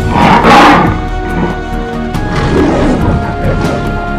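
Dramatic soundtrack music with a lion's roar over it about half a second in, and a second, weaker roar around two and a half seconds.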